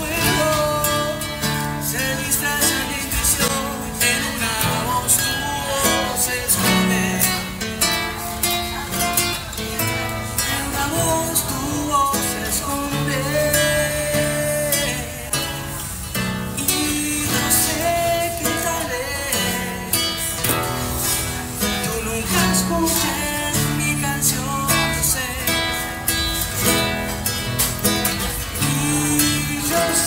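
Classical acoustic guitar strummed steadily, with a man singing in Spanish over it at times.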